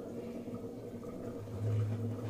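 A faint steady low hum in the room, with a deeper hum that swells for about a second near the end.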